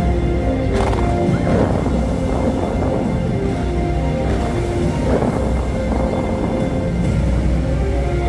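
Dubai Fountain show music over the fountain's loudspeakers: slow held notes over a deep bass, with the rush of the water jets beneath it.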